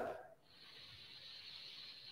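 A man's slow breath through the nose, a faint steady hiss starting about half a second in and lasting nearly two seconds.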